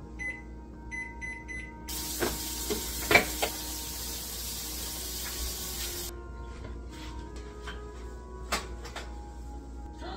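Microwave oven keypad beeping as buttons are pressed to set a timer: about five short high beeps in the first two seconds. Then a hiss lasting about four seconds with a few knocks in it.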